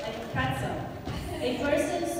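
Speech only: a voice talking, with no other sound standing out.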